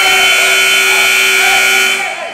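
Gym scoreboard buzzer sounding one loud, steady buzz that cuts off after about two seconds, signalling the end of a wrestling period.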